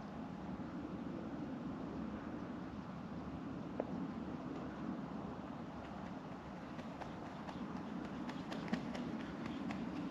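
Steady quiet outdoor background noise, with a few faint clicks that come more often near the end.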